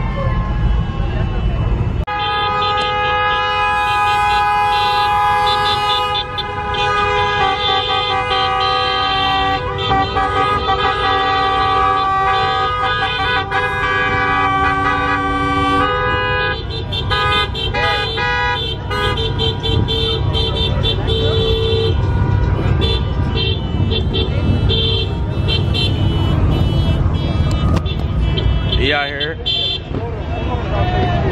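Several car horns honking together in long held blasts, starting about two seconds in and thinning out after about 16 seconds, leaving engine and traffic rumble.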